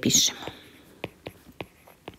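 A breathy trailing-off of speech at the start, then a run of light clicks and taps from a stylus on a drawing tablet as an equation is handwritten.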